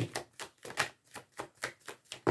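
A deck of oracle cards being shuffled by hand: a steady run of light card slaps, about four or five a second.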